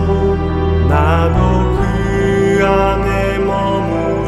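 Slow Catholic worship song: voices singing a sustained melody over soft accompaniment, with a deep bass note that shifts about a second and a half in.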